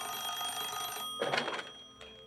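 Desk telephone ringing: one ring of about a second, cut short by a clunk about a second and a half in as the handset is lifted.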